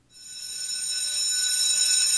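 A high, steady ringing of several tones at once, swelling in over the first second and then holding loud.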